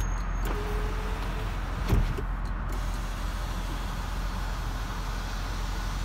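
Electric panoramic sunroof of a 2007 BMW X5 closing: the roof motor runs steadily, with a single sharp clunk about two seconds in, over a steady low hum.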